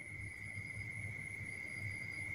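A faint, steady high-pitched tone over low background noise in a pause between speech.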